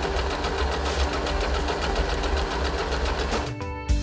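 Electric sewing machine running at speed, its needle stitching in a fast, even rhythm, which stops near the end as music comes in.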